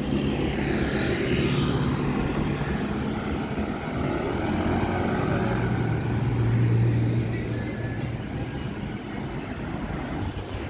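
Street traffic passing on a road: car and motorbike engines and tyre noise, with one engine drone growing loudest about six to seven seconds in as a vehicle passes close.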